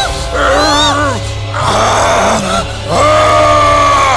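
Dramatic background music with a steady low drone, under strained cries and groans that rise and fall in pitch, and one long held note in the last second.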